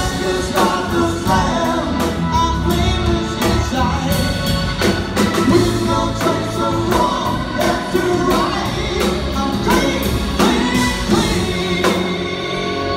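Live rock band playing: a male lead singer singing over drums, keyboards, electric guitar and bass.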